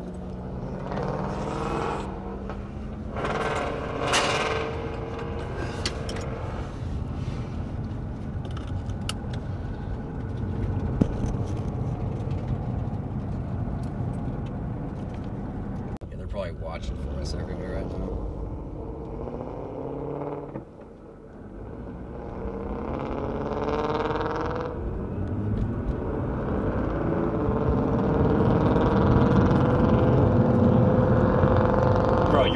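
Very loud Ford Mustang exhaust, heard from inside a following car as the Mustang accelerates, its engine note climbing in long rising pulls and loudest near the end.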